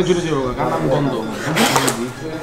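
Men talking across a table: conversational speech with no other sound standing out.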